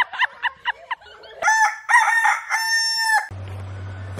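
Rooster crowing once: a long call in several parts that ends on a held note and cuts off suddenly near the end. In the first second it is preceded by a rapid run of short, high, shrill calls.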